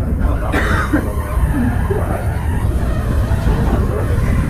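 Steady low rumble of a rack-railway steam locomotive and the carriage it is pushing, heard from inside the carriage, with a short burst of noise about half a second in.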